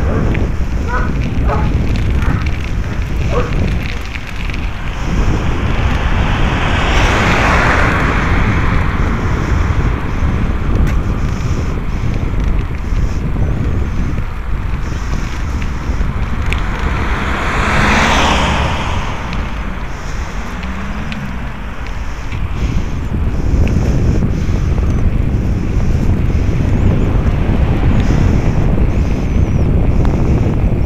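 Wind buffeting the microphone of a camera moving along a road, a steady heavy rumble, with two louder whooshing swells about seven and eighteen seconds in as vehicles go past.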